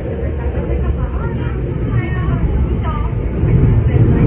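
Inside a Kinki Sharyo electric train on the move: a steady low rumble of wheels on track with a constant hum, growing louder near the end.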